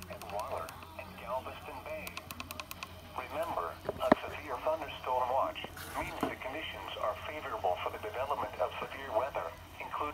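Midland weather alert radio's speaker playing the NOAA Weather Radio voice reading a severe thunderstorm watch, faint, over a steady low hum, with a sharp click about four seconds in.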